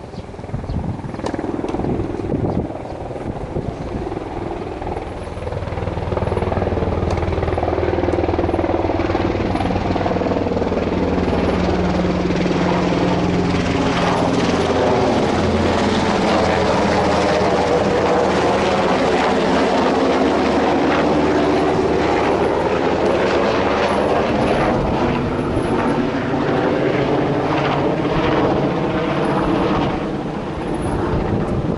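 A low-flying aircraft passing overhead: a steady low engine drone that builds over the first six seconds and stays loud for the rest, its tone sweeping and swirling as it moves across the sky.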